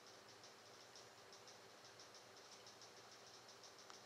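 Near silence: faint room tone with a faint, rapid, high-pitched ticking repeating several times a second.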